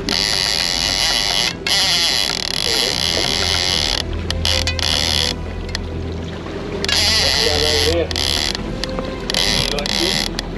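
A big-game lever-drag reel paying out line as a hooked tuna slowly pulls it off against a backed-off drag. Its drag ratchet buzzes in long stretches broken by short pauses, with a low steady hum underneath.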